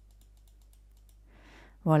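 Faint clicks from computer input over quiet room tone, while the on-screen text settings are being adjusted.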